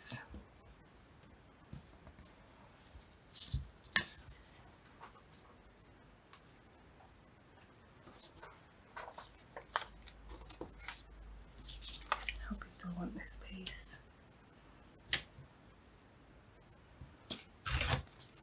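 Paper being torn along the straight edge of a plastic ruler in short, scattered rips, with paper pieces rustling as they are handled and set down.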